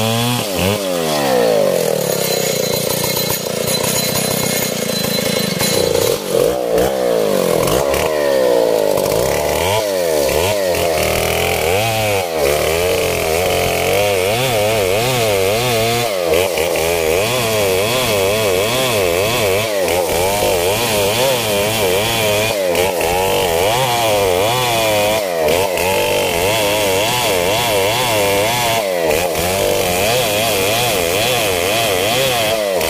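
A STIHL 070 chainsaw's big two-stroke engine running at full throttle while ripping lengthwise along a coconut palm trunk. Its note wavers up and down as the chain loads in the cut, with brief dips in pitch every few seconds.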